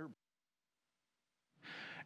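Near silence, broken about one and a half seconds in by a man's short, audible intake of breath before he speaks again.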